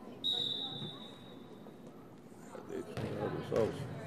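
Referee's whistle in a gym: one long blast a moment in, marking the end of a volleyball rally. Near the end, thuds and shouting voices ring in the hall.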